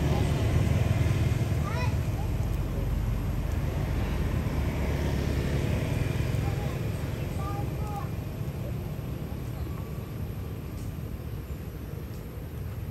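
Steady low outdoor rumble that fades slowly over the stretch, with a few faint short chirping squeaks about two seconds in and again around seven to eight seconds.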